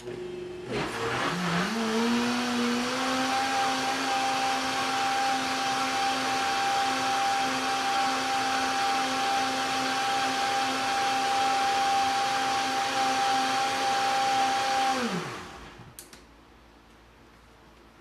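Countertop blender blending a sauce. Its motor starts just under a second in and climbs to speed over about two seconds, then runs at a steady pitch. About 15 seconds in it is switched off and winds down.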